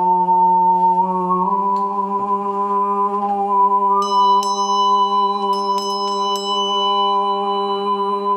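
Overtone singing: a man holds one steady sung drone, stepping up slightly in pitch about one and a half seconds in, with a bright single overtone sounding clearly above it. From about halfway a small brass hand bell is rung several times in quick succession, its high ringing held over the drone.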